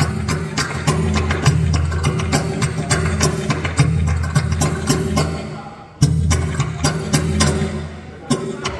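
Bachata music with a steady bass line and busy, evenly ticking percussion. The music dips for a moment just before six seconds in, then comes back in at full level.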